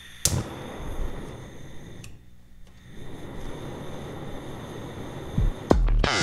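Gas stove burner being lit: a sharp igniter click, then a steady rushing noise of the burning gas. A couple of low thumps come near the end.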